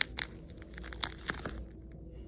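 Plastic film dressing crinkling as gloved hands peel it off the skin and bunch it up, in a handful of short, scattered crackles.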